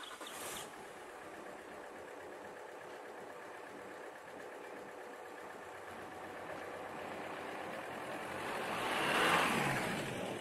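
Small Peugeot van's engine running steadily, then the van drives up and past the camera close by. It is loudest about nine seconds in and eases off as it goes by.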